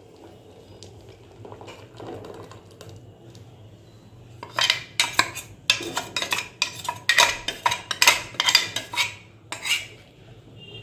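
Steel utensils clinking and knocking against a stainless steel pot as pearl millet flour slurry is poured into water and stirred in. Quiet at first, then from about halfway a quick run of sharp metallic clanks, roughly two a second.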